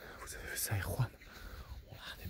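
A man whispering, with two soft low thumps just before the middle.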